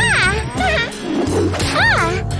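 Wordless cartoon character vocalizations: two excited rising-and-falling exclamations, one at the start and one near the end, with shorter voiced sounds between, over background music.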